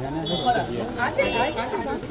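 Several people talking over one another in a crowded room: general crowd chatter.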